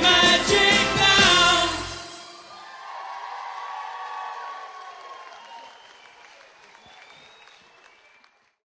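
A live pop band with several voices singing plays the loud final beats of a song, which cut off about two seconds in. The audience then cheers and applauds, and the sound fades out.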